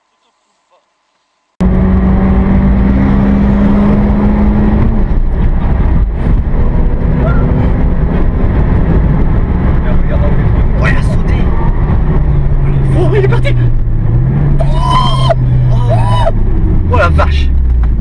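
Car engine at high revs heard from inside the cabin, starting suddenly about a second and a half in, its pitch shifting with speed and falling near the end as the car slows. Voices exclaim in the last few seconds.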